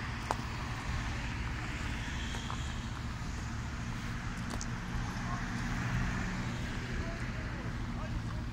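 Cars driving past on a city street, tyre and engine noise swelling as one goes by about six seconds in, over a steady low engine rumble.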